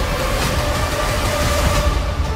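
Cinematic trailer sound design: a loud, dense rumbling roar with a steady droning tone held through it, and deeper low-end swells about half a second in and again near the end.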